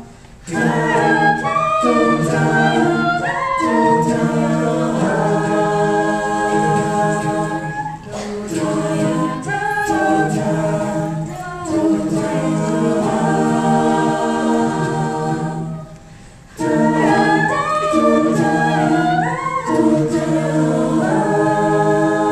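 Vocal jazz ensemble singing a cappella in close, sustained chords that shift from phrase to phrase, with short breaks between phrases about half a second in and again around sixteen seconds.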